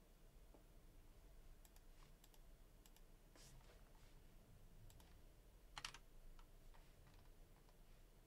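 Faint computer keyboard keystrokes and mouse clicks, a few scattered taps with one louder click about six seconds in.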